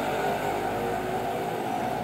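A steady mechanical hum with several held low tones, like an engine running.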